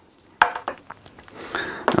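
A sharp plastic click about half a second in, then several lighter clicks and knocks with some rustling: USB cables and their plugs being picked up and handled.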